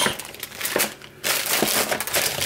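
Packaging being handled: a clear plastic bag of small parts crinkling and the cardboard box rustling, irregularly, with a short lull about a second in.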